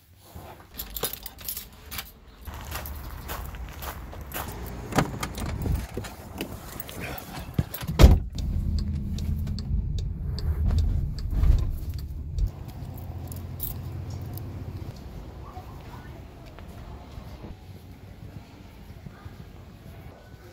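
Keys jangling with clicks of handling, then a loud thump about eight seconds in, followed by a car's engine and road rumble heard from inside the cabin that settles to a quieter hum in the last few seconds.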